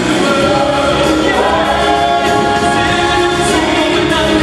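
Vocal ensemble singing a Christmas song together in harmony, backed by a live band with drums and strings.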